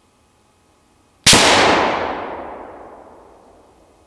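A single shot from a 7.62x54R Vepr rifle about a second in: a sharp report whose echo dies away over about two and a half seconds, the highs fading first.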